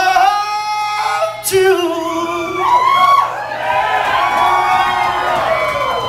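Live singing in a hall: a voice holding long, slowly sliding notes, then several voices overlapping from about two and a half seconds in, with little instrumental backing.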